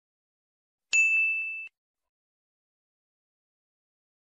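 A single bright notification-bell ding, the sound effect of a subscribe-button animation, about a second in; it rings and fades, then cuts off abruptly before a second has passed.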